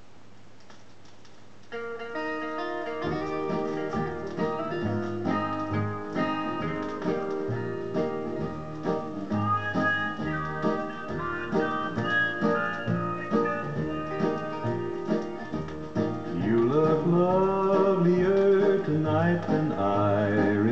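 A 12-inch vinyl record playing through a Bush record player's built-in speaker. A low steady hum runs for about two seconds, then guitar music with a pulsing bass begins and grows louder near the end.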